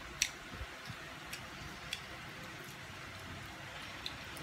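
Scattered light clicks of chopsticks against bowls and plates while eating, the sharpest one just after the start, over a steady faint hiss.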